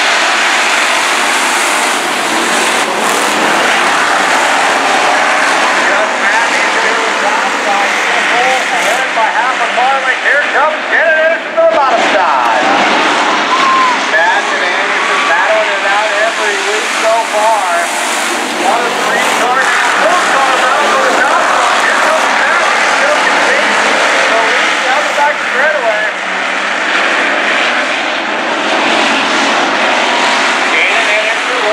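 A pack of hobby stock race cars running on a dirt oval, their engines revving and easing as they go through the turns and down the straights, the pitch wavering up and down.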